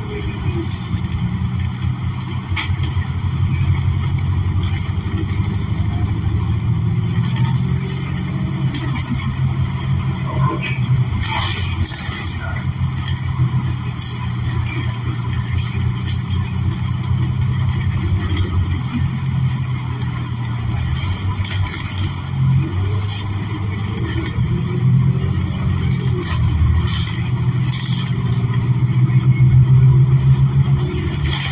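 Cabin sound of a New Flyer XN40 city bus under way, its Cummins Westport L9N natural-gas engine and Allison transmission giving a steady low hum. Occasional clicks and knocks come from the interior fittings, and the hum swells near the end.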